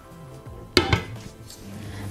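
A ceramic tajine lid set down on the rim of a metal pan: a single sharp clink with a brief ring, about three quarters of a second in.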